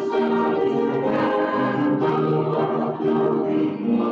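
Church choir of men's and women's voices singing an anthem in one unbroken phrase of held notes.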